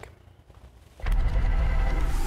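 A TV newscast bumper sound effect: faint room tone, then about a second in a loud, deep whoosh starts suddenly with the animated graphic and holds steady.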